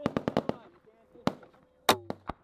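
Gunfire in a firefight: a rapid automatic burst of about seven shots, a single shot about a second later, then one loud crack near the end, with a man shouting in between.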